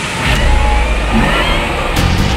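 Car engine revving: a deep rumble that comes in about a quarter second in, with a rising whine above it.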